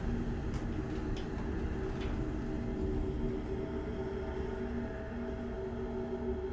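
Old cage elevator rumbling steadily as it travels, with a few light clicks in the first two seconds over a steady low hum.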